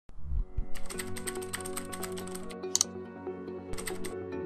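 Broadcast ident music: a sustained synth chord with a rapid run of keyboard-typing clicks laid over it as a sound effect. The clicks come in two bursts, a long one starting under a second in and a short one near the end.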